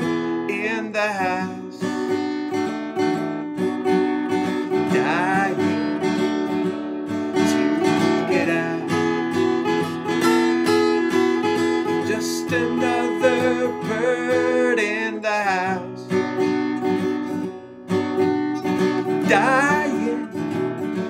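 Acoustic guitar strummed steadily, with a man's singing voice coming in at times over it.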